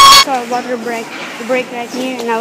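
Montage music with a violin cuts off just after the start, and a boy's voice speaking takes over for the rest.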